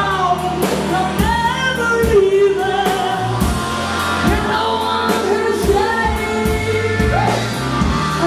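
Live band playing a song: a woman singing a powerful lead vocal over strummed acoustic guitar and electric bass guitar, with a steady beat.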